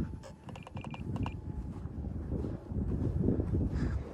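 Wind rumbling and buffeting on the microphone, with a few short high beeps about a second in.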